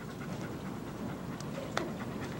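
A dog panting steadily, with a single light click near the end.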